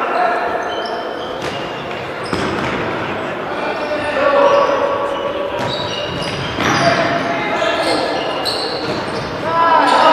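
Futsal being played on an indoor court: the ball being kicked and thudding, shoes squeaking on the hall floor, and players calling out, all echoing in a large sports hall.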